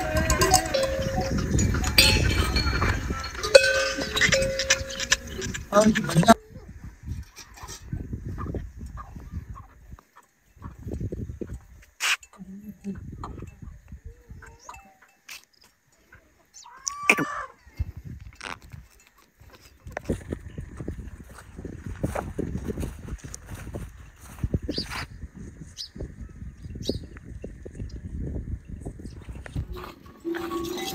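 Bells on a herd of cattle clanking, mixed with animal sounds. The ringing stops abruptly about six seconds in and gives way to quieter farmyard sounds: scattered clicks and knocks, with a short animal call about halfway through.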